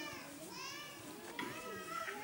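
Faint children's voices and chatter in the background.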